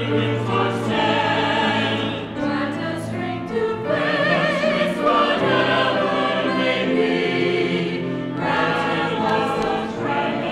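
Mixed church choir singing a slow anthem in parts, with sustained, wavering sung notes. Cello and piano accompany, with long held low cello notes underneath.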